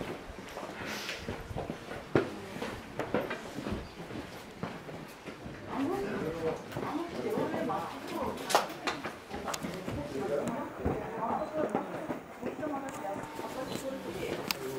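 People talking in the background, clearest from about halfway through to near the end, with scattered sharp taps and clicks throughout.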